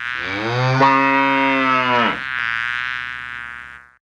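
A bull mooing: one long, low moo of about two seconds whose pitch drops sharply at its end, followed by a quieter, drawn-out moo that fades away.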